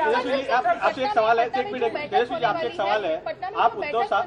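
Several people talking over each other at once, a jumble of voices with no single clear speaker.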